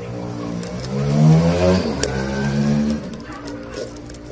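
Plastic gear and toothed rack of a cassette mechanism turned by hand, squeaking with a loud pitched tone that rises over the first two seconds, then holds level and fades.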